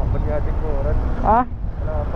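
Wind buffeting a helmet-mounted camera microphone, with the rumble of a moving motorcycle and road underneath.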